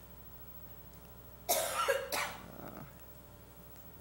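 A person coughing twice in quick succession about a second and a half in, over a low steady room hum.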